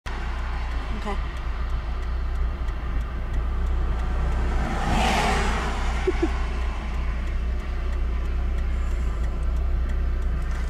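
Steady low road and engine rumble heard inside a moving car's cabin, with a rush of noise swelling and fading about five seconds in as an oncoming vehicle passes.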